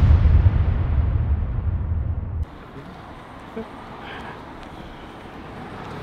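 The rumbling tail of a deep boom sound effect, fading slowly until it cuts off abruptly about two and a half seconds in. Quiet outdoor street ambience follows.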